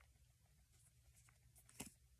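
Near silence: faint room tone with a low steady hum, and one brief soft click near the end.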